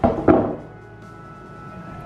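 A hand bone saw set down on a wooden butcher-block table: a knock and a second clunk about a third of a second later, with a brief ring from the metal frame. Background music underneath.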